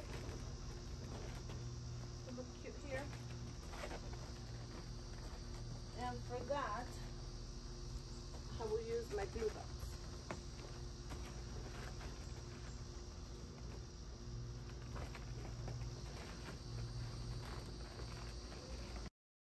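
Faint outdoor ambience: steady insect chirring over a low hum, with a few short wavering calls or distant voices about six and nine seconds in.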